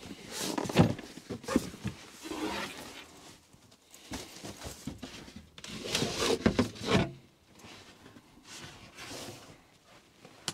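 Irregular knocks, bumps and rustling from hands working in a tight space as a cable is fished through a truck camper's cabinetry, with busier bursts at the start and again about six seconds in.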